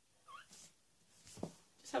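A woman's brief, faint, high-pitched squeal, then a short breath, before she starts speaking near the end.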